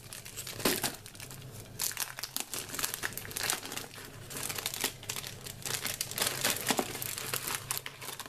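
Clear plastic wrapping on a pack of leatherette sheets crinkling and rustling as it is handled, in irregular crackles throughout.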